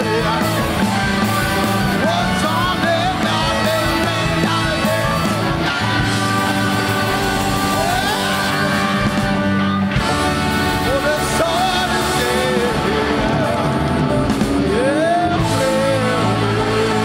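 Live rock band playing loudly, with drums, electric guitars and keyboards, under singing voices that slide between held notes.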